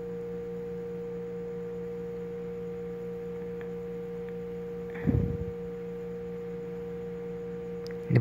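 A steady electrical hum with a clear, pure tone in the recording's background. A brief low sound comes about five seconds in.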